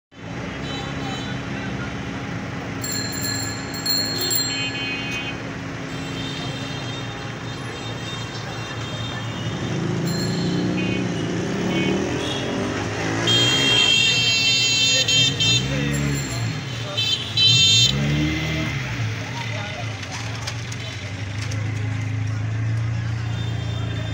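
Street traffic: vehicle engines running, with several horn toots and two low rising-and-falling engine sweeps near the middle, under a murmur of voices.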